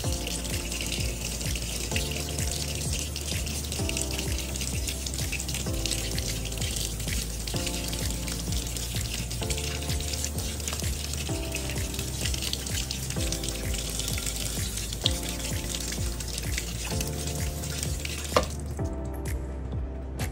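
Kitchen tap running, its stream splashing over hands and a charred roasted eggplant as the skin is rinsed and peeled off. The water stops shortly before the end.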